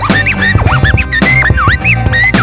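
Hip-hop beat with DJ turntable scratching: quick record scratches swoop up and down in pitch, several a second, over a steady bass line and drums.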